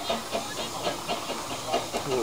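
Narrow-gauge steam locomotive hissing steam, heard close up from its footplate, with a faint regular beat under the hiss.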